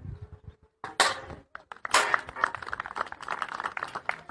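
Two sharp smacks about a second apart, as kicks strike targets held up for them. A quick run of clapping follows.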